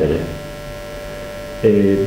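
Steady electrical hum in the recording, heard on its own in a pause between a man's words; his voice trails off at the start and resumes about a second and a half in.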